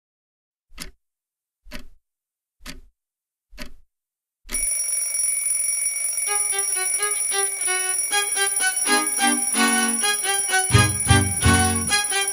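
Four clock ticks about a second apart, then an alarm clock starts ringing. Over the ringing a punk rock band's intro comes in: a melody first, then bass and drums near the end.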